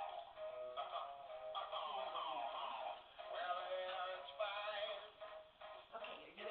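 A song with a singing voice over music, thin and tinny with no low end, as from a small toy speaker in a novelty singing skeleton figurine. There is a brief dip about halfway.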